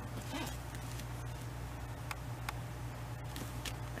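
Faint, irregular ticks and light rubbing of fingertips pressing a self-sealing laminating sheet down along the edges of a paper divider, over a steady low hum.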